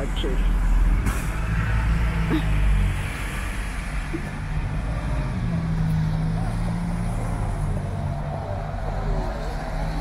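City street traffic: a city bus's engine rumbles loudly as it passes close in the first three seconds, then steadier hum from passing cars' engines over the noise of tyres on the wet road.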